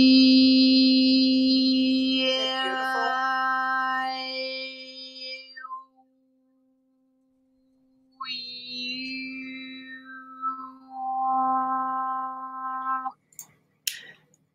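A human voice holding one long steady sung tone, rich in overtones, as used to drive a cymatics pattern. It fades out about six seconds in. After a two-second silence the tone returns with a sliding, falling sound above it and stops shortly before the end, followed by a few clicks.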